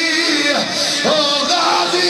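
A man's voice chanting a verse in a melodic, drawn-out line with held notes and pitch glides, amplified through microphones and a public-address system.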